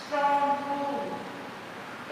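A woman's voice through a loudspeaker system, drawing out a single word as a held tone for about a second, then falling in pitch.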